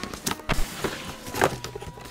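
Cardboard shoe boxes being handled: a few light knocks and a low thump as a box is pushed aside and another is lifted and opened.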